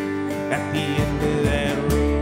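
Live acoustic string-band music: two guitars strumming and picking over plucked upright bass, an instrumental passage with no singing.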